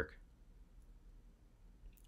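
Near-silent room tone with a single faint computer mouse click near the end.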